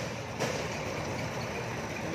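Thai-built Honda Wave 100's small single-cylinder four-stroke engine idling steadily and quietly, with no whine or hiss, the sign of an engine in good original order. A single short click sounds about half a second in.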